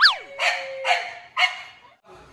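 Dogs barking: a sharp yelp that falls in pitch, then three short barks about half a second apart.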